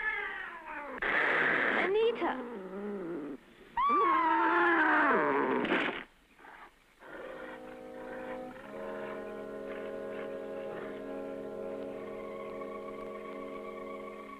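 A woman screaming: long, loud cries that rise and fall in pitch, ending about six seconds in. Then a held chord of film music, with steady sustained tones and a higher tone entering near the end.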